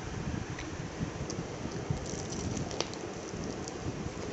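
Biting into and chewing a crispy batter-fried chicken leg, the coating crunching softly, with a couple of faint sharper crackles, over a steady background hiss.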